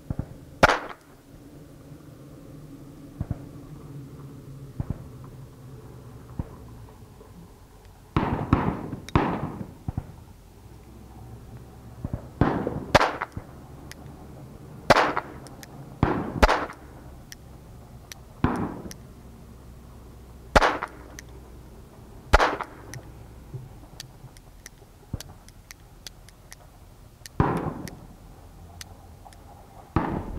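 A century-old Belgian six-shot .22 Short pocket revolver firing a string of sharp, small-calibre shots, spaced unevenly from under a second to several seconds apart as the stiff trigger is worked in double and single action.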